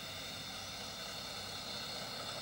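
Steady low background hum and hiss: room tone picked up through a microphone, with a faint mains-like hum.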